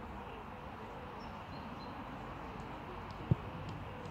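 Outdoor ambience: a steady background rush with a few faint bird chirps, and a single dull thump about three seconds in.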